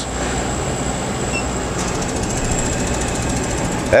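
Steady fan and machine noise from running laser-engraving equipment: an even whooshing hum with a faint high whine.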